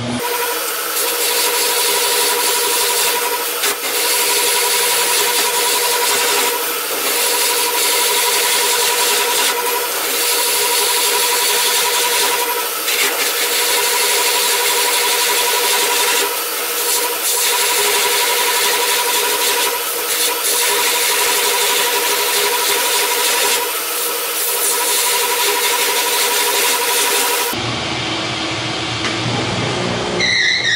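Large homemade wood lathe spinning a big poplar log while a long boring-bar scraper hollows its inside: a steady hissing scrape over a steady motor whine, swelling about every three seconds. It cuts off abruptly near the end.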